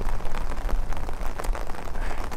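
Heavy rain pattering on an umbrella held overhead: a dense, even spatter of drops with many small ticks.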